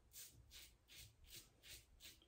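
Faint scraping of a Wolfman WR2 double-edge safety razor with an Astra SP blade cutting about a day's stubble through lather on the neck: about five short strokes, a little under three a second, during the first pass.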